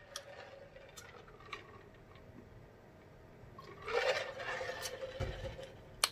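A person drinking from a large glass jar, with liquid gulping and sloshing in the second half, followed by a low thump about five seconds in.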